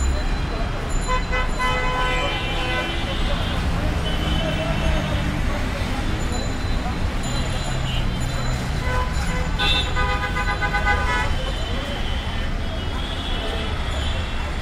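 Busy road traffic with a steady rumble of engines, and vehicle horns honking in repeated bouts, most about a second in and again around nine to eleven seconds in.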